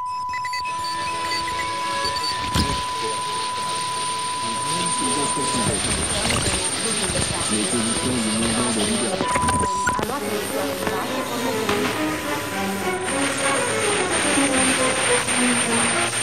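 Radio receivers being tuned across stations: static and hiss under a steady high whistle, a held mid-pitched tone for the first six seconds or so, and broken scraps of music and voices sliding in and out of tune as the dials move.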